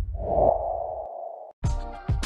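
The closing sting of an advertising jingle: one held note that fades out over about a second and a half. After a brief silence, music with sharp, evenly spaced notes starts near the end.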